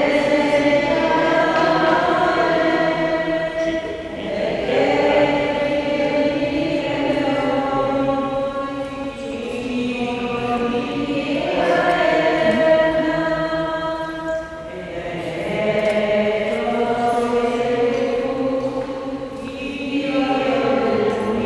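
A group of voices singing a hymn in sustained phrases a few seconds long: the offertory hymn of a Catholic Mass.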